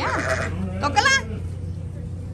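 Goats bleating: two short, quavering calls, the second and louder about a second in.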